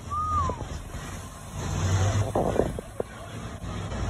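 Street traffic: a vehicle engine running low, swelling in the middle, with a single short high note falling in pitch near the start.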